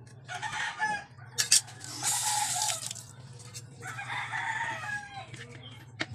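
Rooster crowing three times, the last call trailing off in a falling note. A cleaver knocks sharply on a cutting board about a second and a half in.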